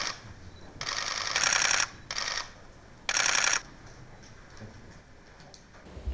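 Camera shutters firing in rapid bursts: four bursts of fast clicking, each under a second long, in the first four seconds, then a few single clicks.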